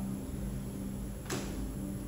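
A steady low hum of room tone with one sharp knock a little past halfway.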